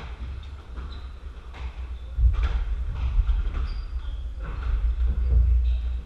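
A squash rally: the ball is struck by racquets and smacks off the court walls in repeated sharp cracks, with short squeaks of shoes on the wooden floor. A heavy low rumble comes in about two seconds in and stays under the hits.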